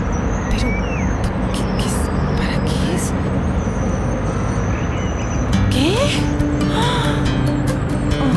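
Background music over busy street ambience: a murmur of voices, traffic noise and scattered clicks and knocks. Steady low notes come in about halfway through.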